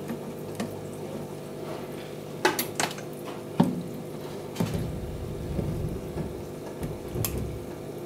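Aquarium air-driven filter bubbling over a steady electric hum. A few sharp knocks sound around the middle, and a low rumble runs through the second half.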